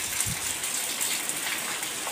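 Heavy rain falling steadily onto a flooded yard and its standing water, an even, unbroken hiss.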